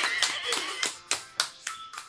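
A child clapping her hands, about six claps at roughly three a second, the last few sharper and more spaced.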